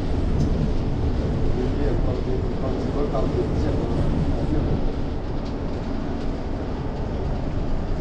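Steady low rumble of a bus driving at speed, heard from inside the cabin: engine, tyre and road noise.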